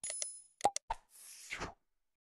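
Animated title-card sound effects: a bright click with a short high ringing ding, then three quick pops about two-thirds of a second in, then a short whoosh near the end.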